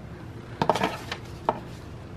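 Items being handled in an open cardboard subscription box as a boxed bar of soap is lifted out: a short cluster of rustles and knocks a little after the start, then a single sharp click.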